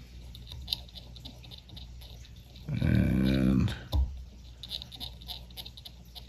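A man's voice for about a second midway, a brief sound with no words, over faint small clicks of tools being handled and a steady low hum; a sharper click follows just after the voice.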